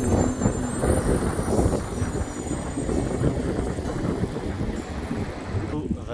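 A fast mountain river rushing over boulders and stones: a steady, loud rush of water.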